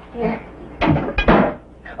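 Kitchen cupboard door and dishes knocking and clattering in a short loud cluster about a second in, as plates are got out.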